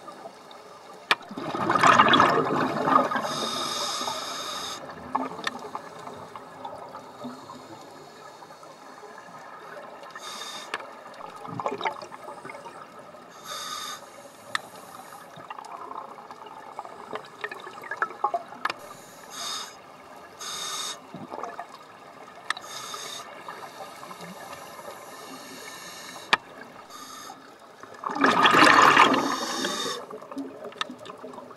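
Scuba regulator breathing heard underwater: two loud rushes of exhaled bubbles, about two seconds in and near the end, with fainter hissing and clicking between.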